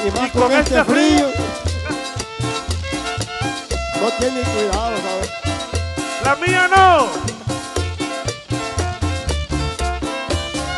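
Live chanchona band playing an instrumental cumbia passage: a violin melody with swooping slides near the start and again about two-thirds through, over upright bass notes pulsing on the beat, strummed acoustic guitar and timbales.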